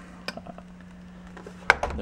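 A few small plastic clicks from handling a pistol-grip RC car transmitter, with a sharp click near the end, over a steady low hum.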